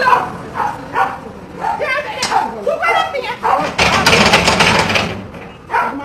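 People talking, in speech that the recogniser could not transcribe, with a burst of noise lasting about a second, about four seconds in.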